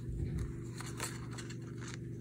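Faint scraping and rustling of thick thread being wrapped around a stitch on a paper book spine, with a few light clicks, over a steady low hum.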